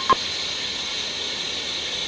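A short click just after the start, then steady television static hiss as the picture breaks into rolling bars: the set has lost its signal.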